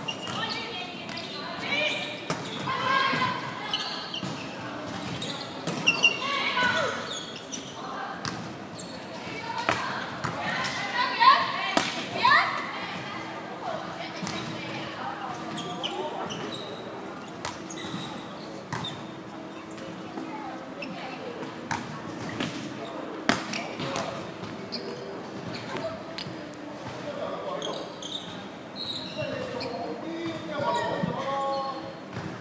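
Volleyball play in a large indoor sports hall: sharp, echoing smacks of the ball off players' arms and the wooden floor, mixed with players' calls. The loudest hits come about eleven to twelve seconds in.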